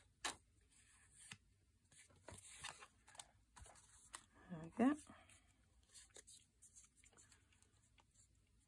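Faint tabletop paper-craft handling: a sharp snip of small scissors just after the start, then scattered rustling and tapping of paper. About halfway through comes a brief murmured voice sound, rising in pitch, the loudest thing here.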